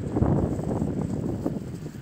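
Wind rumbling on a phone microphone, with irregular crunching as of footsteps in snow.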